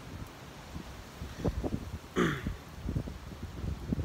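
Wind buffeting the microphone as an uneven low rumble, with a short falling vocal sound from the man about two seconds in.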